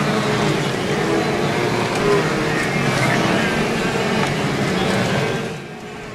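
Wildebeest herd crossing a river: dense splashing and churning water with short grunting calls from the animals, over a steady low engine hum. It fades shortly before the end.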